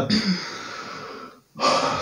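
A person breathing between sentences: a long soft exhale that fades over about a second and breaks off, then a sharp, louder intake of breath just before speech resumes.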